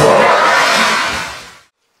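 Gunge cannon firing: a sudden loud blast and rush as a load of thick gunge is shot out and splatters onto a person, fading away over about a second and a half.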